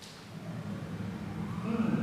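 A siren begins to wail over a low rumble, its tone rising in pitch in the second half and getting louder, as part of a music video's cinematic intro.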